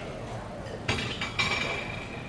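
Tableware clinking twice, about half a second apart, the second clink ringing on briefly.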